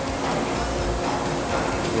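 Steady hum and rumble of a running injection molding machine.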